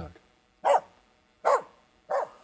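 Finnish Spitz barking, two sharp barks about a second apart. The bark a bird dog gives to mark a treed grouse, here given with no bird found: over-eager false barking.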